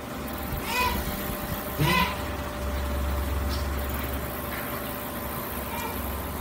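A low steady hum, swelling a little in the middle, with two brief voice-like sounds about one and two seconds in.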